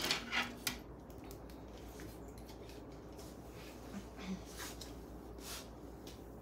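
Hair-cutting shears and comb being handled: a few light clicks in the first second, then soft brushing sounds as hair is combed through near the end.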